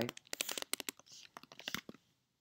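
Typing on a computer keyboard: a quick, irregular run of key clicks that stops just before the end.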